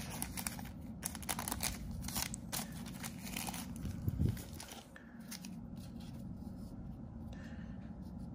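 Paper and foil trading card pack wrapper crinkling, with cards rustling as the freshly opened pack is handled. There are quick crackles through the first few seconds, settling into quieter handling over the last few seconds.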